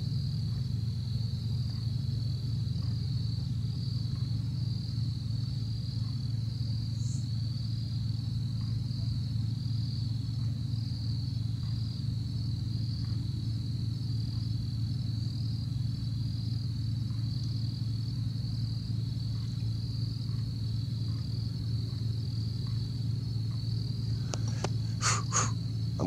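Crickets trilling steadily in one continuous high-pitched chorus over a steady low hum. A few sharp clicks near the end.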